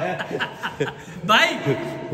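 Voices talking with some chuckling, and one voice calling out "bye" a little over a second in.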